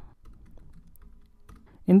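Faint computer keyboard typing: a few scattered light key clicks.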